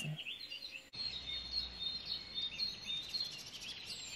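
Songbirds chirping and whistling, many short high calls overlapping, starting suddenly about a second in.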